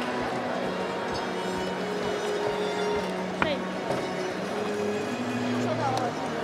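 Arena sound: music with steady held notes over indistinct voices and crowd hubbub in a large hall. A brief sharp sound stands out about three and a half seconds in.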